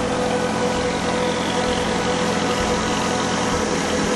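Ferry's engine running steadily under way, a constant hum with an unchanging tone.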